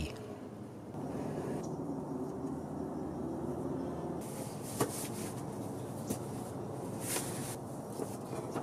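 Low steady background noise with a few light clicks and knocks from handling a truss-tube Dobsonian telescope, about five, six and seven seconds in.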